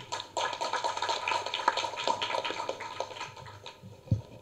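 Audience applauding, a dense patter of clapping that dies away near the end.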